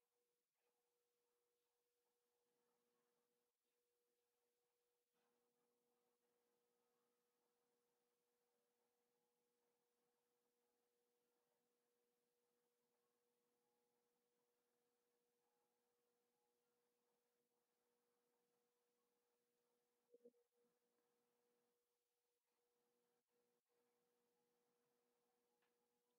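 Near silence: only a very faint steady tone, with a tiny blip about twenty seconds in.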